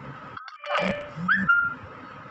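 A woman's voice saying a short word in two parts, the second part rising and then held on one level pitch before it stops.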